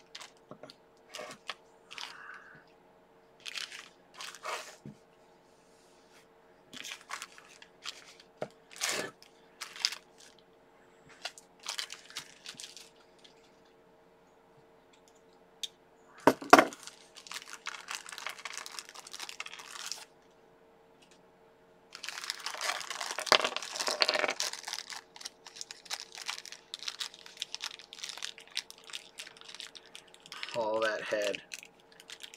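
Small plastic figure parts clicking and snapping as they are handled and fitted together, with a loud sharp snap about halfway through. Plastic bag packaging crinkles in longer stretches through the second half.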